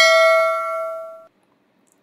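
A bell-like 'ding' sound effect for an on-screen subscribe-button notification bell, ringing with several clear tones and fading, then cut off suddenly a little over a second in.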